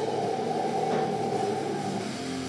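Heavy metal band playing live through a PA, with distorted electric guitars holding a sustained, droning chord and no clear drum hits.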